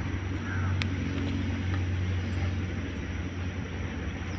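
Steady low hum of an idling engine, with a few faint bird chirps near the start.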